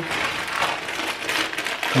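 Plastic parcel packaging rustling and crinkling as it is handled and torn open.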